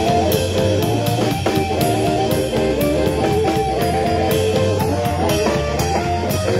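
Live blues band: an amplified harmonica holding and bending notes over electric guitars and a drum kit, with steady cymbal strokes about three a second.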